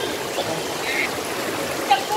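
Spring water running steadily from a rock face into a pool, an even trickling rush.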